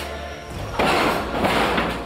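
Background music, with a loud burst of noise about a second long starting just under a second in: a sound effect of a blow landing.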